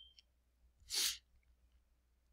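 A single short, sharp burst of breath from a man at the microphone about a second in, lasting about a third of a second.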